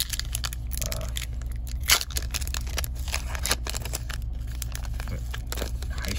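Foil wrapper of a hockey trading-card pack being torn open and crinkled by hand: a run of crackles with one sharp rip about two seconds in.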